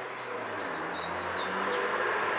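Small birds chirping in quick, high, sliding notes over a steady outdoor rushing background with a faint low hum.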